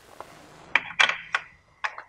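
A billet aluminum crankcase test cap being set and seated in the oil filler opening of an engine valve cover: a faint rustle, then about four short metal clicks and knocks, roughly a third to half a second apart.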